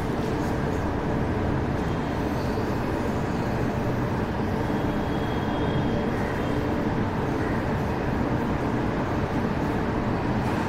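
Steady rumbling background noise.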